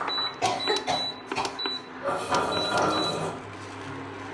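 About six short, high electronic beeps from an induction hot plate's touch-control panel, with clicks and handling noise between them. Near the end the cooker's steady low hum is left on its own.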